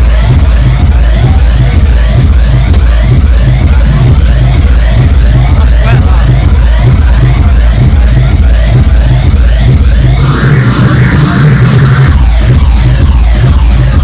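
Loud electronic dance music played over a club sound system, with a steady four-on-the-floor kick drum. About ten seconds in, the kick drops out for a couple of seconds in a short breakdown, then comes back.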